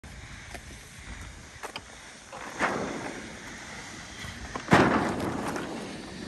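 Windsurf sail's film and fabric crinkling in two rustling bursts, about two and a half and almost five seconds in, as the rig is handled. A few faint clicks sound over a light background of wind.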